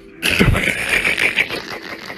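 A sudden loud rattling clatter of many rapid clicks, with a dull thud at its start, dying down after about a second and a half.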